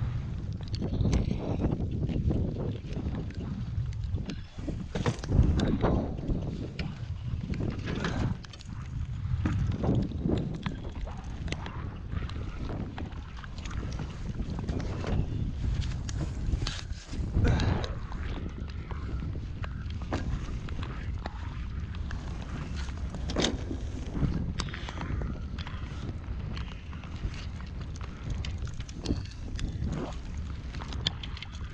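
Wind buffeting the microphone in a steady low rumble, with scattered knocks and clunks from gear being handled on the deck of a jon boat.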